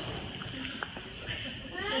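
A pause in speech in a church: faint room murmur with a couple of small clicks, then a man's voice starts again near the end.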